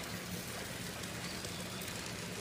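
Italian sausage, potatoes, onions and hot peppers sizzling in a perforated grill pan on a grill: a steady crackling sizzle with a low hum underneath.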